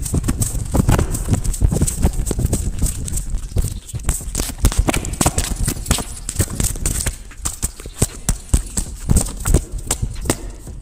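Rapid, irregular knocking and clicking, several strikes a second, easing off slightly near the end.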